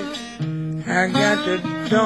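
Acoustic blues guitar picking a short run of notes in a slow blues.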